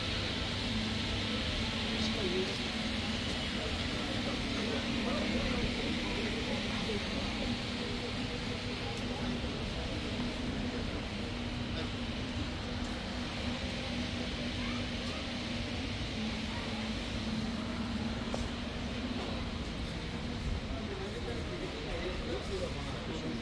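Street ambience: indistinct voices of people nearby over a steady low hum and constant background noise.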